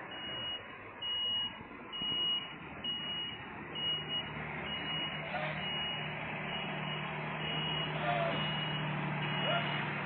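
A heavy truck's reversing alarm beeping evenly, about one beep a second, over a diesel truck engine that grows louder from about three and a half seconds in as the bulk-collection truck pulls up.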